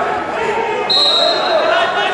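Indistinct voices and talk echoing in a large sports hall. A single steady high-pitched tone cuts in about a second in and fades out just under a second later.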